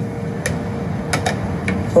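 Four sharp, unevenly spaced clicks over a low steady hum and a single held tone.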